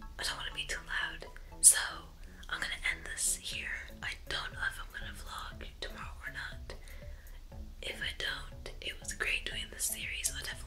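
A young woman whispering.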